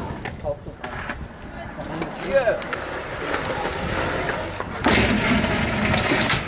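Skateboard wheels rolling on concrete, then a louder scraping from about five seconds in as the board grinds along the edge of a concrete ledge.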